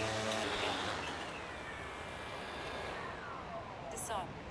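Cuta-Copter Trident T5K fishing drone's motors humming in flight, a steady multi-toned hum that fades about half a second in, then a thin whine sliding slowly down in pitch as the drone flies out.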